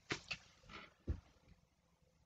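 A few faint short clicks, then a soft low thump about a second in.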